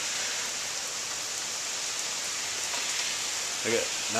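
Steady, even hiss of rain falling in a thunderstorm, with no thunder heard.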